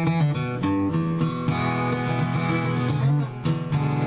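Gibson J-50 acoustic guitar playing a short blues run: a quick string of picked single notes, a chord left ringing for about a second and a half in the middle, then more picked notes near the end.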